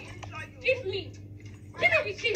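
Indistinct raised voices in a heated argument, in short bursts, over a steady low hum.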